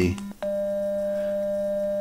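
A computer-synthesized steady tone from the demo's audio output. About half a second in, it switches with a click from a pure cosine tone to the third-degree Fourier approximation of a square wave: the same low pitch with its third harmonic added, which gives it a little edge while staying smooth.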